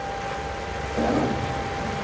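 Classroom room tone: a steady hiss with a faint constant high whine, and a faint, distant voice briefly about a second in.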